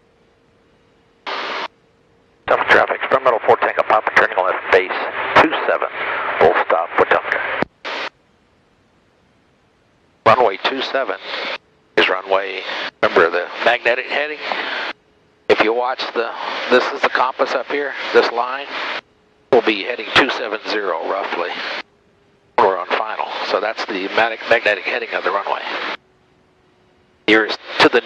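Aviation radio traffic heard over the aircraft intercom: a series of voice transmissions, each cutting in and out abruptly, with a thin band-limited sound and near silence between calls.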